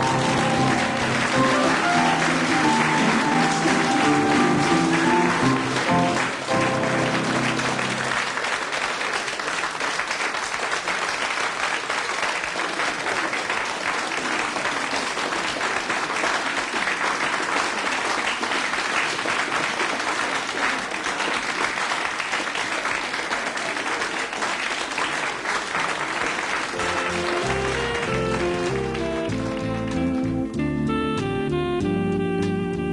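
An audience applauding while the accompanying band plays the last bars of a tune, then long steady applause on its own. The band strikes up again near the end.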